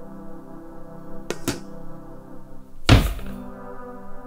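Low, sustained ambient music drone. About a second and a half in come two sharp knocks close together, and about three seconds in a single heavy, deep thud with a short ringing tail, the loudest sound.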